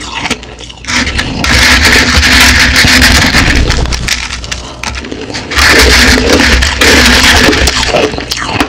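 Close-miked crunching of crushed ice being chewed, in loud stretches of dense crackling and snapping: a long one from about a second and a half in to about four seconds, then shorter ones near six and seven seconds, with quieter crackles between.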